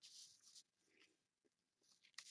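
Near silence: room tone with two faint, brief scuffs in the first second.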